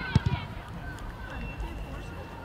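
Children's voices calling out during a football game on an open grass pitch, with two quick dull thuds of the ball being kicked just after the start.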